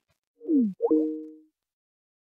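Microsoft Teams call-end sound, signalling that the meeting has been left and ended: a short electronic chime about half a second in, a falling tone followed by a quick upward sweep that settles into two held notes for about half a second.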